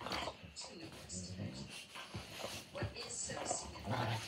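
Two German Shorthaired Pointers play-wrestling and vocalizing at each other in a string of short, low grumbles.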